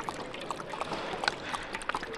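A dog lapping water from a plastic bowl, close up: a run of irregular wet laps and small splashes.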